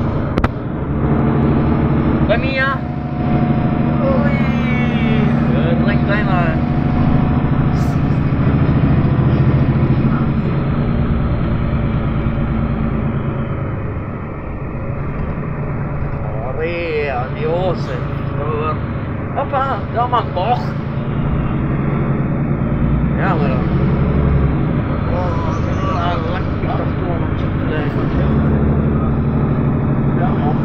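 City bus engine running, heard from inside the passenger cabin: a steady low hum that eases off somewhat in the middle and strengthens again near the end, with passengers' voices over it.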